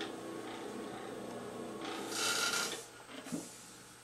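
Electric pottery wheel running steadily, with fingers rubbing on the wet clay of the spinning bowl. There is a short scraping rasp about two seconds in, then the sound dies away.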